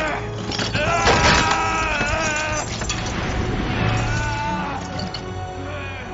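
Film soundtrack: dramatic orchestral score under a man's strained, wavering cries, loudest between about one and two and a half seconds in and again near four seconds in.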